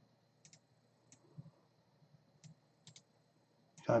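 Quiet computer mouse clicks, about six short, scattered clicks over a few seconds, as text on a web page is selected for copying.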